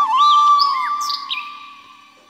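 Flute intro music ending on a long held note that fades away, with a few quick bird chirps and tweets over it in the first second and a half.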